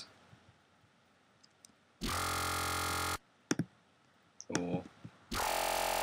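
Dry growl bass from a Native Instruments Massive synth patch, played with its effects chain bypassed. Two held notes: the first lasts just over a second, and the second starts near the end. Mouse clicks fall between them.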